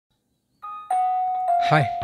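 Samsung Galaxy S21 notification chime: two ringing notes, the second a little lower and held on as it rings out, as a notification arrives.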